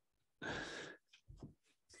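A man's short, breathy sigh, an audible exhale of about half a second, followed by a few faint mouth clicks.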